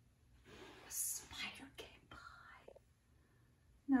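A woman whispering softly for about two seconds, breathy and hushed, then falling silent about three seconds in.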